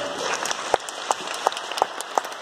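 Audience applauding at the end of a talk, with a few loud individual claps close by standing out over the general clapping.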